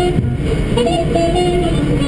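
Music with a melody of held notes stepping up and down in pitch, over the steady low rumble of a car's road and engine noise.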